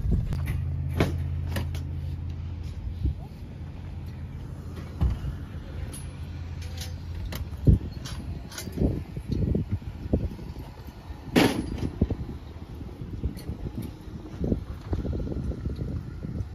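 Steady low drone of a Toyota car's engine and road noise heard inside the cabin while driving, dropping after about three seconds and gone by about halfway. Then scattered light knocks and clicks, with a louder knock near the middle and another a few seconds later.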